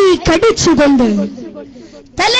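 Speech only: a boy preaching loudly into a stage microphone in a rising and falling declamatory voice. It trails off into hall echo over the last half second.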